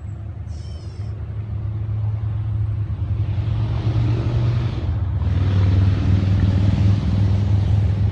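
Distant Amtrak P32AC-DM Genesis diesel locomotive approaching: a steady low engine hum that slowly grows louder, with rising track and wheel hiss from the middle on.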